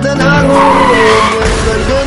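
A car's tyres screeching in a skid for about a second and a half, over a song that keeps playing underneath.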